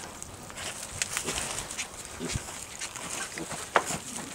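A miniature Jersey heifer shifting about in a livestock pen: scattered scuffling and small knocks, a short low grunt a little past halfway, and a sharp knock near the end.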